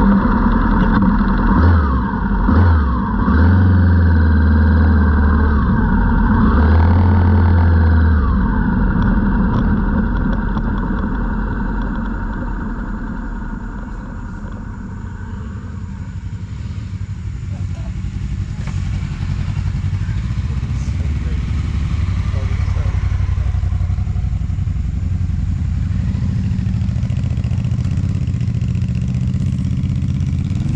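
Adventure motorcycle engines running as the bikes ride off. The engine note rises and falls through the first several seconds, then runs more steadily.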